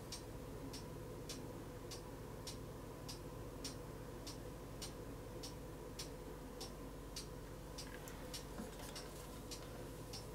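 Soft, evenly spaced ticking, a little under two ticks a second, like a clock, over a faint steady hum.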